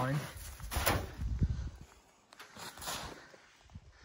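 Footsteps crunching in snow, with a few short crunches about a second in and again near three seconds, and small knocks in between.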